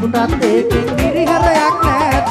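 Live band music: a male lead singer singing a melody over a steady drum beat.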